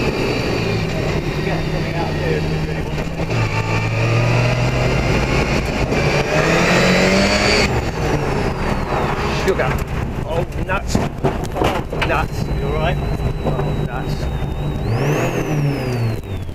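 A rally car's engine heard from inside the cabin while the car is driven hard, its pitch climbing under acceleration and dropping at gear changes, with sharp clicks in the middle.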